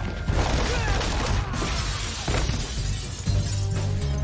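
Fight-scene film soundtrack: glass shattering and sharp hits over a music score, with impacts spaced about a second apart.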